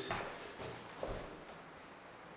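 Faint rubbing and dabbing of paint being worked onto a canvas laid on the floor, with a soft knock about a second in.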